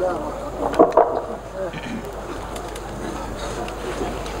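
Indistinct voices murmuring in a hall, with two light knocks about a second in.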